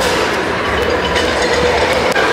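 Steady background rumble and noise of a large, sparsely filled stadium, with a few light clicks of the phone being handled as it is turned.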